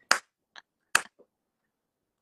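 Near-silent, breathy laughter: a few short, sharp puffs of breath, the strongest just after the start and about a second in.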